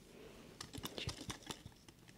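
Faint handling noise: a string of light, irregular clicks and taps as plush toys with cardboard tags are held and moved in the hands.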